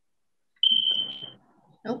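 A single steady, high-pitched electronic beep about half a second in, lasting under a second, with a voice under it.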